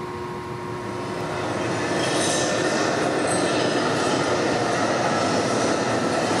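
The opening of a figure skater's short-program music over the rink speakers: a noisy swell without a clear tune that builds over about a second, starting a second or two in, then holds steady and loud.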